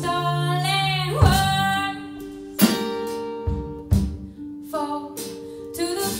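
Live acoustic band music: a woman singing over plucked acoustic guitar, with a low bass line. Sung phrases open and close the stretch, with sharp guitar chords ringing out between them.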